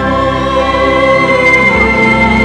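Live orchestra playing a slow, sad air in long sustained notes, with a high note coming in near the end and held.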